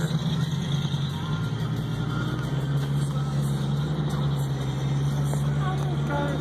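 A steady low vehicle engine hum heard from inside a car. It drops slightly in pitch about two and a half seconds in.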